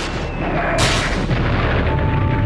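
Artillery fire: a sharp shell blast about a second in, followed by a heavy low rumble of explosions.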